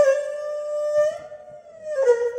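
Erhu playing a slow melody over loudspeakers: one held note that bends up a little about halfway through and then slides slowly down.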